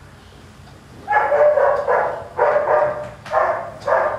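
A dog barking while held on a training table: after a quiet first second, about five loud barks in a quick run.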